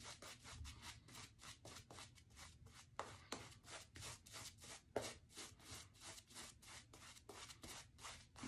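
Shaving brush bristles stroking thick soap lather onto a stubbled face: faint quick brushing strokes, several a second, with a couple of louder strokes about three and five seconds in.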